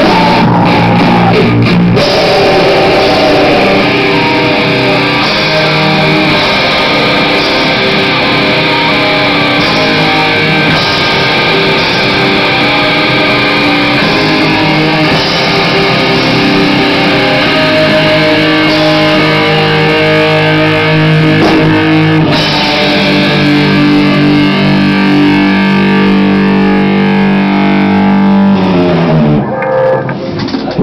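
A rock band playing live at close range, led by loud electric guitars. Near the end the chord slides down in pitch as the song ends.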